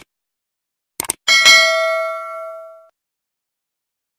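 Stock subscribe-button sound effect: a quick double mouse click about a second in, then a single bright bell ding that rings and fades away over about a second and a half.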